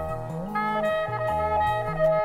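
Jazz-rock horn section of trumpets, trombones and woodwinds playing held chords over a moving low line, which glides up to a higher note about half a second in.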